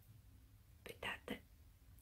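Near silence, broken about a second in by three faint, short whispered syllables from a woman's voice.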